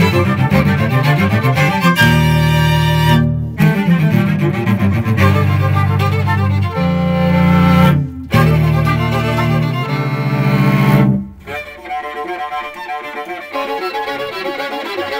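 Bowed string quartet (violin, viola and cello) playing an instrumental jazz piece: loud, long-held low chords broken by two brief, sudden stops. A little past three quarters of the way in, the playing drops to a quieter, lighter passage of short notes.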